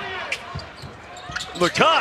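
A basketball dribbled on a hardwood court: a few separate sharp bounces, with a commentator's voice starting near the end.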